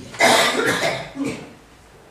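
A man coughs close into a handheld microphone: one loud cough about a quarter second in, then a shorter, quieter one just after a second.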